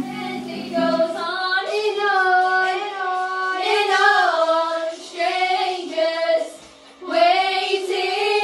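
Guitar music ends about a second in, then girls sing a song together with no instrumental backing, in short phrases with brief breaks.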